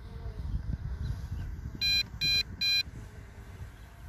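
A drone's remote controller sounding a warning: a group of three short, high beeps about 0.4 s apart, roughly two seconds in, over a low rumble.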